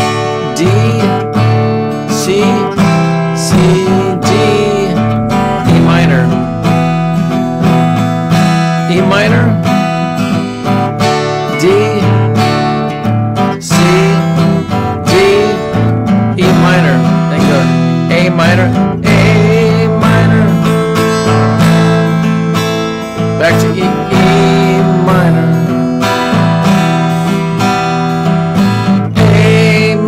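Acoustic guitar strummed steadily through a song's chord changes, the song opening in E minor.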